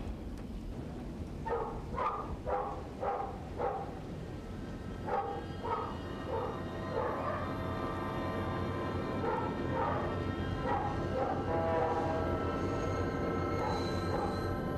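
A dog barks in two runs of short barks, about two a second, over the first half. From about seven seconds in, a film score of held, eerie tones swells in and grows slightly louder.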